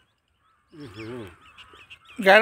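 A brief, low, wavering vocal call about a second in, with faint high chirps above it.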